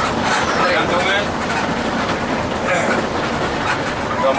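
Cabin noise inside a moving Mercedes-Benz 1521 intercity bus: steady engine and road noise with the cabin rattling, and a voice talking in the background.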